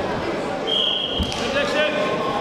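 Wrestlers' shoes thudding and squeaking on the mat as they grapple, over the voices and noise of an arena hall. A short, steady high tone sounds a little over half a second in.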